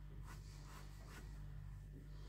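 Flex fountain pen nib, cut to an arrowhead shape, scratching faintly across notebook paper in about three short strokes.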